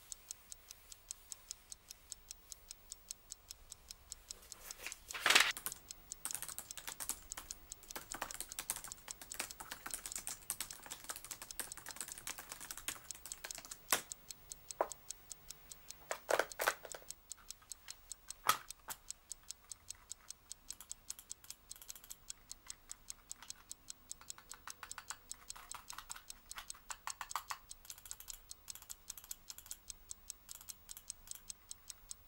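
Clock ticking steadily, with stretches of fast typing on a laptop keyboard. A few louder knocks stand out, the loudest about five seconds in.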